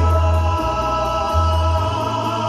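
Live music: a male singer with keyboard accompaniment, holding long steady notes over a bass line that moves every half second to a second.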